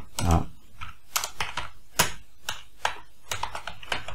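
Typing on a computer keyboard: an uneven run of single keystrokes as a short line of text is entered.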